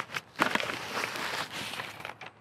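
Black fabric carrying bag rustling as an Omnia stovetop oven is slid out of it: a continuous rustle lasting about a second and a half, with a few small clicks.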